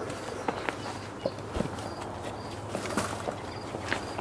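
Footsteps and rustling through dry brush and branches, with a few light snaps and clicks, over a faint steady hum.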